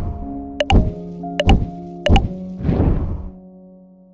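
Soft background music with a subscribe-button animation sound effect laid over it: a whoosh, three sharp mouse clicks under a second apart, and a second whoosh. The music then fades out.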